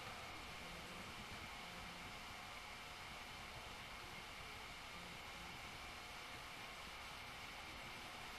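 Faint, steady hiss with a thin, constant high whine underneath: room tone with no distinct events.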